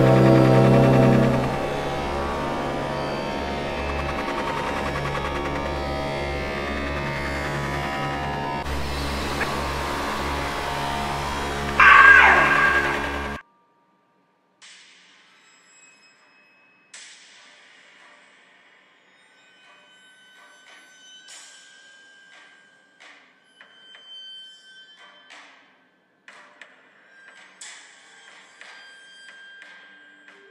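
Background music under an intro: a sustained low chord that drops in level after a second or two, then a louder sweeping sound effect that cuts off abruptly about 13 seconds in. For the rest of the time it is quiet, with faint scattered clicks and taps.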